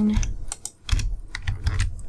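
Computer keyboard keys being pressed: several short, sharp key clicks.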